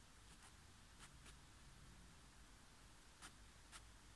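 Near silence: faint room tone with four brief, faint clicks, two about a second in and two more near the end.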